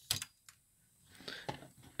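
A few small mechanical clicks from an Aiwa AD-F770 cassette deck as it is switched to stop and its tape transport drops into stop mode. One sharp click comes right at the start, and a few lighter ones come near the end.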